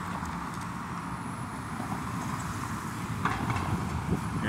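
Street traffic on a city road: a car driving past, heard as a steady low rumble of engine and tyre noise.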